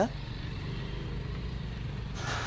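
Road vehicle engine running steadily in slow traffic: a low, even hum and rumble.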